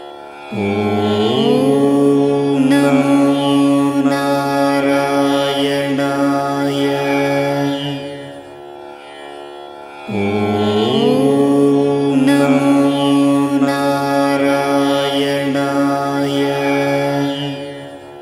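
Devotional background music: a mantra chanted over a sustained drone. Each phrase opens with a rising glide and then holds its notes. The same phrase of about eight seconds is heard twice, with a brief quieter gap between.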